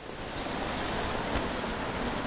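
Steady rushing city-street noise, with a faint click a little past halfway.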